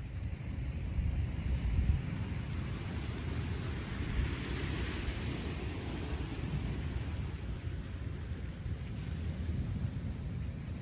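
Wind buffeting the microphone as a steady low rumble, with a hiss of water washing over the shoreline cobbles that swells and fades about halfway through.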